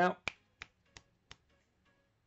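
Four sharp clicks, evenly spaced about three a second, each fainter than the last.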